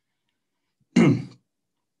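A man clears his throat once, a single short burst about a second in.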